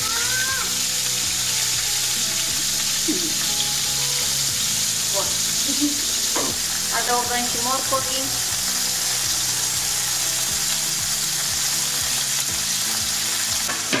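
Baby octopuses frying in hot olive oil in a pan: a steady sizzle.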